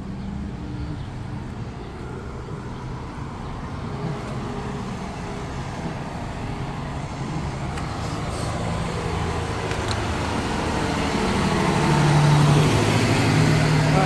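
Diesel engine of a tractor-trailer semi truck running as it approaches at low speed, growing steadily louder until it passes close near the end.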